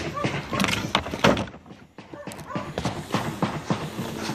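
A man's voice with a run of short knocks and clatter, irregularly spaced, with a brief lull about halfway through.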